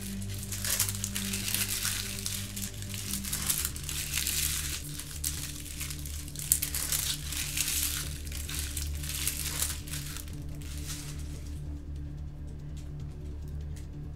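Trading card pack wrappers being torn open and crinkled by hand, a dense crackling that stops near the end. Quiet background music plays under it.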